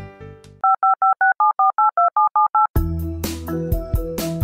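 Touch-tone telephone keypad dialing: a quick run of about a dozen short two-tone beeps. Music ends just before the beeps, and music with a beat comes in right after them.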